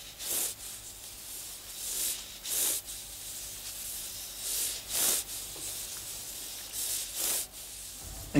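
Fingertips sliding over embossed braille paper while reading: a dry rubbing hiss in short strokes, seven or so, several coming in pairs.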